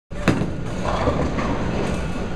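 Bowling ball hitting the wooden lane with a sharp thud just after release, then rolling away with a steady low rumble.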